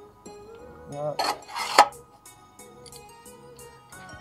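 Metal exhaust tip scraping and clinking against metal: a short scrape about a second in, ending in a sharp clink a little before two seconds. Background music with steady tones plays underneath.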